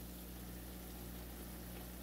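Grated carrots in sunflower and grapeseed oil bubbling in a frying pan, a faint steady simmer over a steady low hum. The bubbling is the sign that the carrot oil is done.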